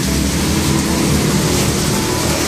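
A motorbike engine running on the road, a low steady hum under a steady rush of outdoor noise.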